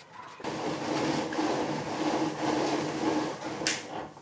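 A small electric motor whirring with a steady hum, starting about half a second in, with a short hiss near the end.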